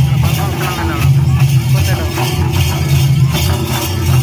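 Live Mundari folk dance music: a drum beating a steady repeating rhythm with voices singing over it.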